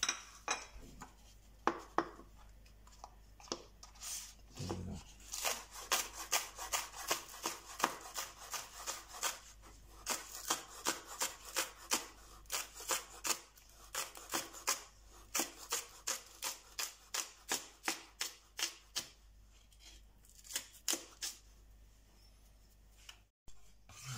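Chef's knife chopping spring onions on a wooden cutting board, a steady run of sharp knife strikes about three a second that thins out near the end. A couple of sharp knocks come before the chopping starts.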